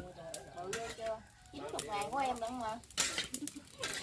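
Voices talking quietly in the background, with a few sharp clinks of a metal spatula against a wok as pieces of octopus are stir-fried.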